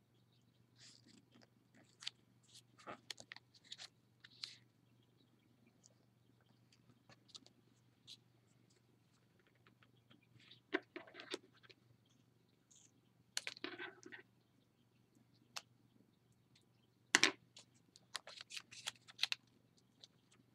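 Small piece of sticky-note paper being folded and creased by hand: faint, scattered rustles and crinkles, with a few louder crackles around the middle and near the end, over a low steady hum.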